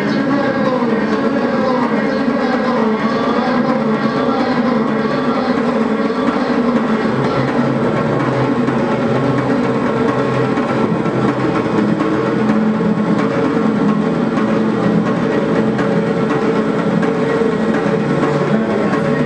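Improvised experimental electronic music: a dense, loud wash of layered tones from battery-powered keyboard and electronics. The pitches slide in the first few seconds, then settle into steadier drones.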